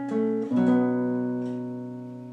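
Classical guitar played fingerstyle: a few single plucked notes, then a chord struck a little over half a second in that rings out and slowly fades, closing the piece.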